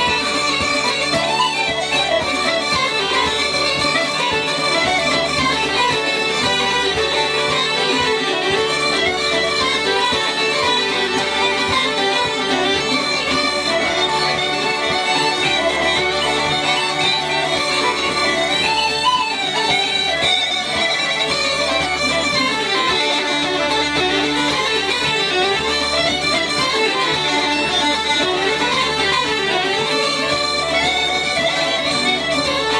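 Several uilleann pipes playing a traditional Irish tune together, the chanters' melody over steady held drones.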